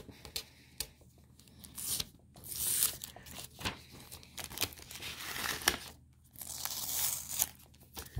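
Blue painter's tape being peeled off a sheet of paper in several long ripping pulls, with paper rustling and crinkling between them.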